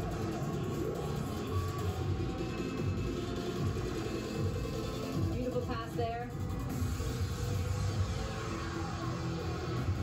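Cheer routine music mix with a steady beat, heard through a television speaker, with a short vocal line about six seconds in.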